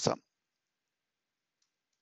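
The end of a man's spoken word, then near silence with a few faint clicks near the end.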